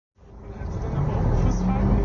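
Ambience fading in from silence over about the first second: a steady low vehicle rumble with traffic noise and people's voices in the background.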